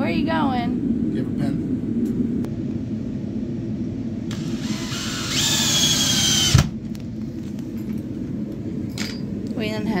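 DeWalt cordless drill/driver driving a screw through a bracket into the wall. Its motor runs for about two seconds with a whine that rises and then holds, then stops abruptly with a sharp knock.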